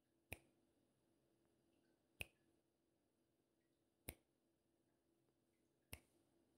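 Countdown ticks: four short, sharp clicks evenly spaced about two seconds apart over near silence, marking the answer time in a quiz.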